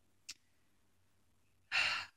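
A pause in speech: a faint mouth click, then a short, audible in-breath near the end as the speaker gets ready to talk again.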